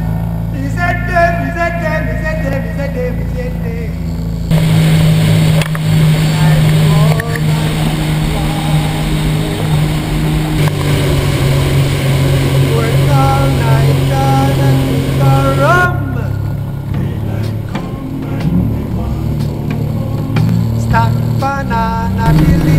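Personal watercraft engine running at speed, with a steady hiss of wind and spray, under background music with guitar. The engine drone and the hiss change suddenly about four seconds in and again near sixteen seconds, where the shots change.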